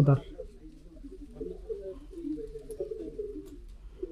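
Domestic pigeons cooing, an unbroken wavering murmur of overlapping low calls.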